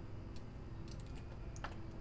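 A few faint, scattered clicks of a computer mouse and keyboard as squares are marked and an arrow is drawn on an on-screen chessboard, over a low steady room hum.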